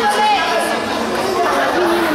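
Several people's voices shouting and talking over one another: spectators calling out during a wrestling bout.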